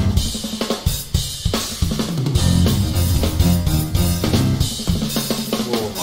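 Live jazz band recording with busy, prominent drum-kit playing (bass drum, snare and cymbals) over electric bass notes.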